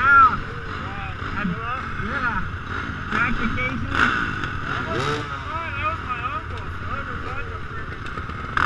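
Indistinct talking of people close by, over a steady low rumble of dirt bike engines running, with a couple of brief sharp clicks about four and five seconds in.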